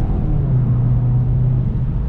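2.0-litre turbocharged four-cylinder of a VW Golf GTI Performance (Mk7.5), heard from inside the cabin, pulling hard under acceleration with a steady engine note over road noise. The note breaks near the end as the DSG gearbox shifts up from third to fourth.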